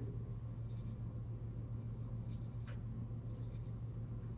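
Faint rustling of Bible pages being handled at a lectern, over a steady low electrical hum.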